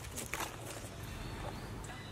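Macaques scuffling and stepping in dry leaf litter, with a few sharp crackling clicks bunched together about half a second in, over a steady low rumble.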